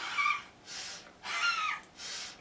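A woman breathing forcefully out through a wide-open mouth with her tongue stretched out, in a yoga breathing exercise. Two loud breathy exhalations, each followed by a quieter in-breath through the nose.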